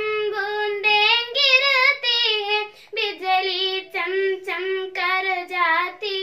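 A young girl singing a Hindi poem solo and unaccompanied, a sung melodic line with wavering vibrato on held notes and a brief breath pause about three seconds in.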